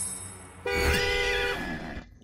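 A steady horn-like tone sounding several pitches at once, lasting about a second and starting a little over half a second in.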